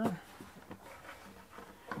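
A few faint, short clicks and soft handling noises: hands feeling for the swivel release under a dinette table's pedestal, against quiet room tone.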